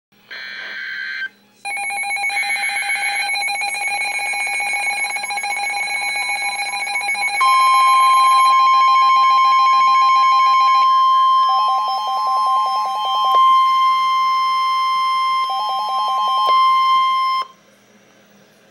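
Weather alert radios, a Midland NOAA Weather Radio among them, going off for a Winter Storm Warning. After a short buzzy burst, several electronic alarm beeps sound over one another. From about seven seconds in comes the steady 1050 Hz NOAA Weather Radio alert tone, with rapid beeping breaking in twice, until it all cuts off suddenly shortly before the end.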